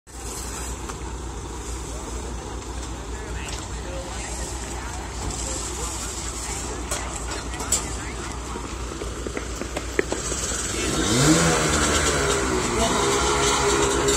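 A vehicle engine running steadily with a low rumble, then revving up with a rising pitch about eleven seconds in and holding at the higher speed.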